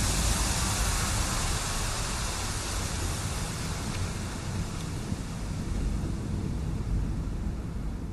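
Electronic noise sweep in a hardcore/frenchcore mix: a long hiss over a low rumble that slowly fades, the high end dying away toward the end, a breakdown without melody.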